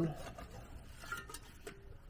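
Quiet shed room tone with a few faint, scattered clicks and rustles of handling.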